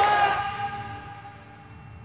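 Orchestral string music: a held chord, loudest at the start, dying away over the first second and a half to a quiet sustain.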